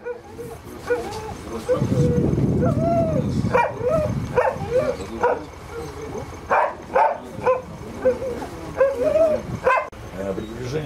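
A spitz-type dog yelping and whining, with about nine short sharp yelps among rising-and-falling whines. A low rough noise comes about two seconds in.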